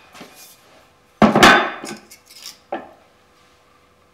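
Metallic clank and rattle from a hand-lever arbor press as its ram is lifted off a thin aluminium test strip. A loud, ringing clatter comes about a second in, followed by a couple of lighter knocks as the stamped strip is handled.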